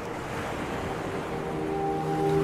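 Steady whooshing wind over surf. Soft piano music comes in during the second half, its notes held.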